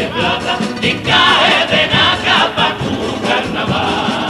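Carnival comparsa choir of men singing together in several voices, accompanied by strummed Spanish guitars.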